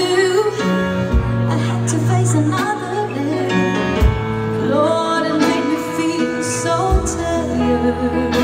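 Female vocalist singing a slow soul ballad live, backed by a band with bass guitar and drums, with a drum hit about every three seconds.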